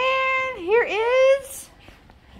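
A toddler's high-pitched, drawn-out vocalizing: a long held note, a quick dip and rise in pitch, then a second held note, ending about a second and a half in.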